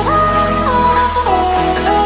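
Background electronic music: a held synth melody that steps down in pitch over a sustained bass.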